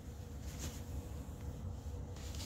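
Faint rustling of acrylic yarn skeins and their paper labels being handled, over a low, steady room hum.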